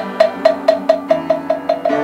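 A Buddhist moktak (wooden fish) struck in a quickening run of hollow knocks, speeding up to about five a second, over held musical notes that shift pitch about halfway through.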